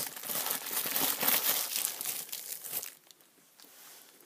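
Plastic toy packaging crinkling and rustling as it is handled and opened, a dense crackle that stops about three seconds in.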